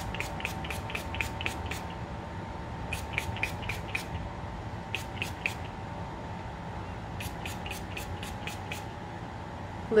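Mario Badescu facial spray bottle pumped in quick runs of mist, about four sprays a second, in four separate runs, over a steady background hum.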